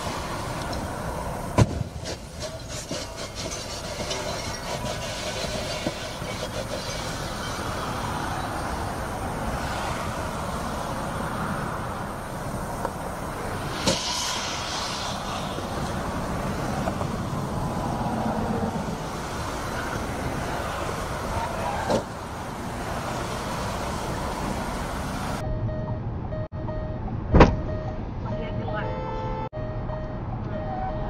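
Traffic noise from cars on a freeway, with indistinct voices over it. Near the end a single loud sharp knock stands out.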